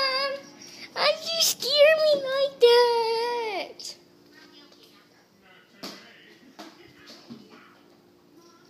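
A child's high-pitched sing-song voice, wordless, in about four drawn-out calls over the first four seconds, then a few light knocks over a faint steady hum.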